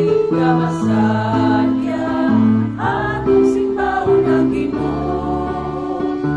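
A choir singing a hymn with instrumental accompaniment, the voices and the low held notes moving together from chord to chord.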